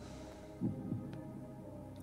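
A pause between speech: a faint steady low hum on the microphone line, with a brief quiet low murmur of a voice about half a second in and a tiny click just after a second.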